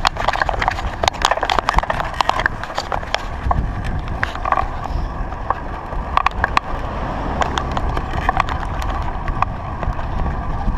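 Bicycle riding over asphalt, with irregular clicks and knocks from the bike rattling, over a low wind rumble on the microphone.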